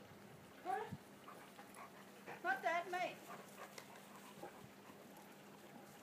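Two short, high-pitched wavering voice sounds, the second one longer, about a second in and again about two and a half seconds in.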